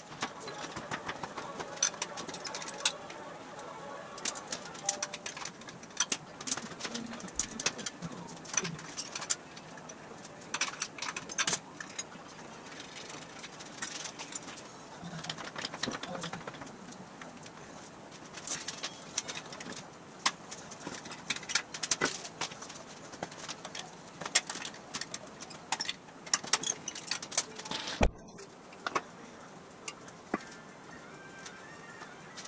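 Garage work noise: scattered clicks, clinks and knocks of hand tools and metal wheel and axle parts, with one loud clank near the end.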